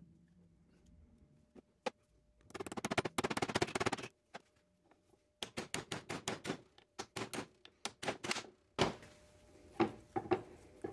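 Light metallic clicks: a quick rattle of clicks about two and a half seconds in, then a string of separate sharp taps from about five and a half to eight and a half seconds in, as a new roll pin is worked into the hole of a Dana 44 differential carrier.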